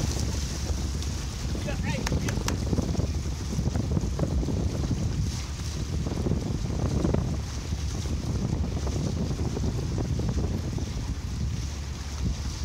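Wind buffeting the microphone over the low, steady rumble of a fishing boat at idle, with water splashing and lapping at the hull where a beluga whale is at the surface.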